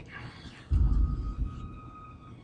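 Suspenseful film score: a deep low rumble swells about two-thirds of a second in under a thin, held high note.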